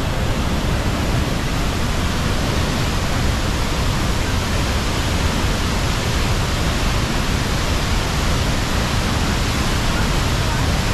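Tegenungan Waterfall pouring into its plunge pool: a loud, steady rush of falling water.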